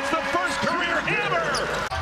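Arena crowd noise with basketball shoes squeaking on the hardwood court during live play, broken by a brief dropout near the end.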